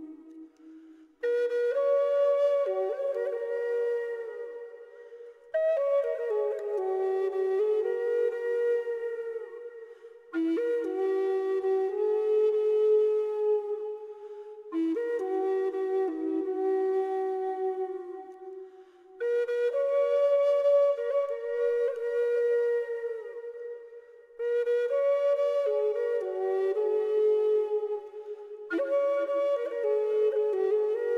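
Slow background flute music, phrase after phrase, each new phrase beginning about every four to five seconds and fading out before the next.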